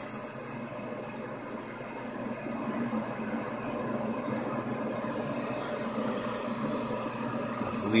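Steady receiver static hiss from an HF transceiver's speaker as the dial is tuned slowly up the 27 MHz (11-meter) band. The band is dead: only band noise, no signals.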